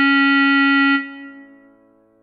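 A clarinet holding one long note that stops about a second in and fades away.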